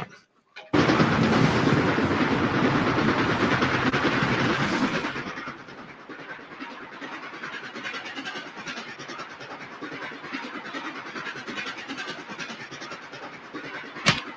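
Steam train on a film soundtrack: a loud rushing hiss of steam starts about a second in and lasts about four seconds, then gives way to the quieter, steady rattle of the train.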